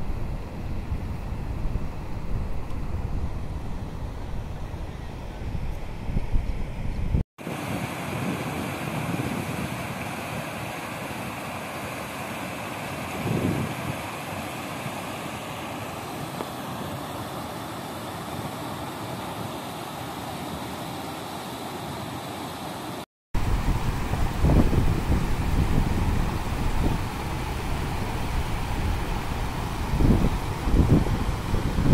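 Wind buffeting the microphone at the start. After a cut about 7 seconds in, an even rush of water pouring over a low concrete overflow weir. After another cut about 23 seconds in, gusty wind on the microphone again over the flowing water.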